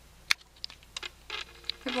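A glass nail polish bottle handled close to the microphone: one sharp click, then a few lighter clicks and taps of fingernails and fingers against the bottle.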